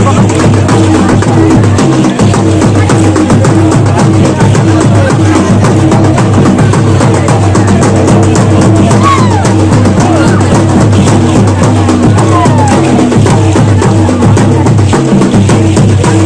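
Loud drumming and percussion accompanying a tribal dance, with crowd voices mixed in.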